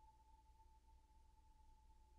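Near silence: a faint steady high tone held without change, over a low hum.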